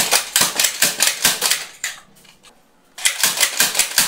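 Dart Zone Storm Squad foam-dart blaster being primed and fired rapidly: fast runs of sharp plastic clicks and snaps, one burst lasting about two seconds and another starting about three seconds in.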